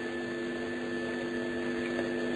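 Steady low hum made of several fixed tones over a faint hiss: the background noise of the recording, heard in a pause between phrases.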